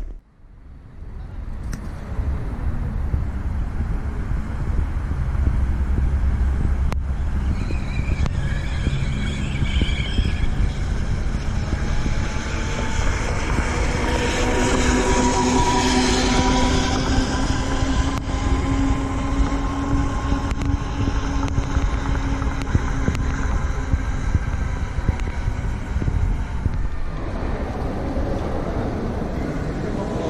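Outdoor ambience with a steady low rumble. From about halfway, a small passenger shuttle cart drives past with a steady motor whine whose pitch bends slightly. The whine stops a few seconds before the end.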